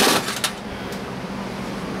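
A short burst of noise and a couple of light clicks right at the start, as small engine parts are handled in a metal tray. After that comes a steady low background hum.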